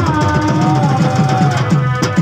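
Folk music led by a dhol drum: low bass strokes about four a second, each one dropping in pitch, under a long held melodic note that slides slightly down and stops near the end.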